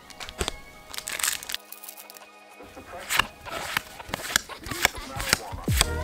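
Background music over the crinkle of foil Pokémon booster packs and the short, crisp flicks of trading cards being shuffled through by hand.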